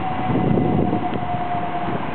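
An engine's low rumble with a steady high whine that slowly drops in pitch and fades out near the end.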